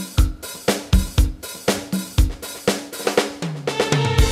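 Music with a drum kit keeping a steady beat, about two beats a second, with kick, snare and cymbals; held notes from other instruments fill in near the end.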